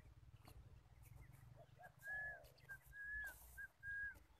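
Clear whistled notes in a short-then-long pattern, repeated three times from about two seconds in, with a lower coo from a dove under the first long note.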